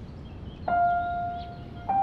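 Soft background score: a held note comes in about two-thirds of a second in, and a second, slightly higher held note joins near the end.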